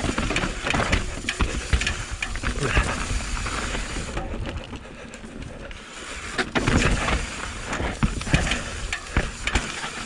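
Mountain bike descending a rough dirt and rock trail: tyres rolling over dirt and rock, with the bike rattling and knocking over bumps. It is quieter for a couple of seconds around the middle.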